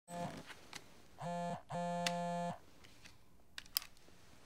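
A cell phone buzzing on vibrate for an incoming call, in short buzzes with the last one the longest, followed by a few light clicks near the end.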